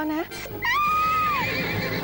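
A horse neighing: one long whinny that starts about half a second in and falls away in pitch near the end.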